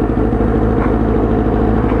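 Kawasaki ZX-9R Ninja inline-four sport-bike engine idling steadily, with an even pitch and no revving, heard close up from the rider's helmet.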